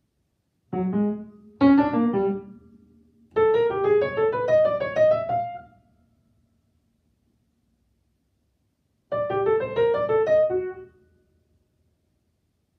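Upright piano played in short, separate groups of notes with silences between them: two brief chords in the first two seconds or so, a longer run of notes that dies away about halfway through, then about three seconds of silence before another short group near the end that also fades out.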